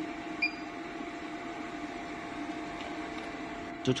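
A single short electronic beep from a touchscreen control panel as a calibration point is tapped, about half a second in, over a steady electrical hum.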